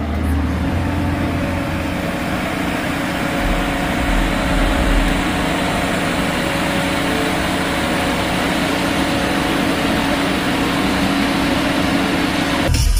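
Fire brigade turntable ladder truck's engine and hydraulics running steadily as the rescue basket is raised, an even drone with a constant hum through it.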